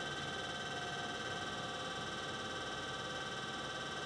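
Electric potter's wheel spinning at a steady speed: a constant motor whine made of several fixed high tones.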